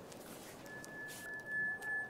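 Cartoon sound effect: a single steady high-pitched electronic tone, like a held beep, from the hieroglyph-covered remote control as it is handled. It starts about half a second in and holds at one pitch, swelling slightly near the end.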